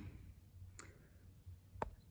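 Near silence with two faint, sharp clicks about a second apart, the second one louder.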